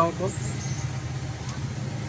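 A man's voice ends a word at the start, then a steady low hum carries on through the pause, the kind of background drone left by nearby traffic or an idling engine.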